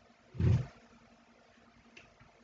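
A single short, dull thump about half a second in, from the wooden knitting loom being handled and shifted.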